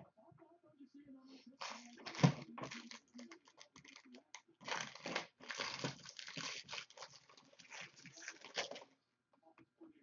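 Trading card pack wrappers being torn open and crinkled by hand, in a string of irregular rustling bursts that stop about a second before the end.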